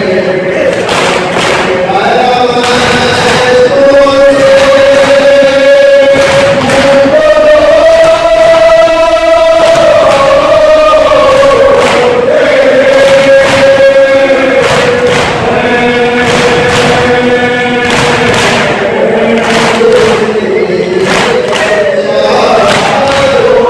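A group of men chanting a Muharram lament (nauha) in unison, with long held notes, over a steady rhythm of hands slapping chests in matam, about two strikes a second.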